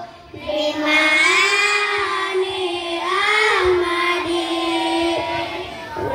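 A large group of children singing together in unison, a slow melody with long held notes that glide up and down; a short breath pause right at the start before the next phrase comes in.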